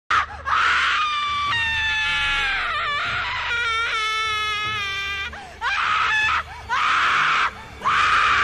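A woman screaming: one long scream that wavers and breaks in pitch over about five seconds, then three shorter screams with brief pauses between them.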